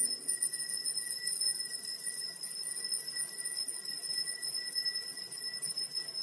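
Altar bells rung at the elevation of the host, the signal that the consecrated host is being raised. It is a continuous shimmering jingle of several high ringing tones that begins abruptly.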